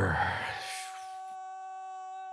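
A steady electronic buzzing tone holding one pitch, with a hiss that fades away over the first second.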